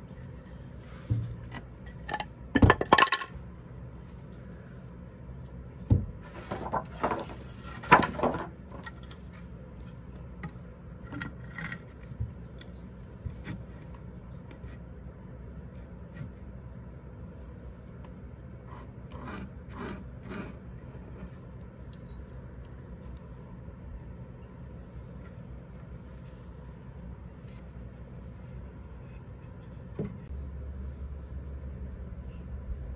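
Wooden boards knocked and scraped against a wooden stair stringer as they are held up and positioned by hand: several sharp clatters in the first nine seconds, a few lighter taps around eleven to thirteen seconds, and a fainter cluster around twenty seconds in, over a steady low background hum.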